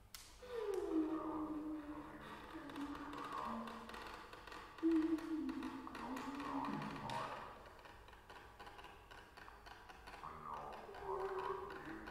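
Freely improvised music: pitched tones that slide and waver downward over scattered taps and knocks on objects. The loudest tone comes in about five seconds in and slides steeply down.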